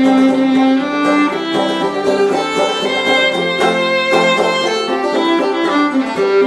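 Fiddle playing an instrumental break in a folk song, long bowed notes over a steady rhythm, with no singing.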